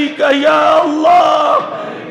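A man chanting an Arabic dua in a raised, drawn-out voice, holding long wavering notes that slide between pitches, with no clear words.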